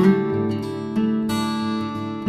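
Background music led by a strummed acoustic guitar, with steady chords and a new strum about once a second.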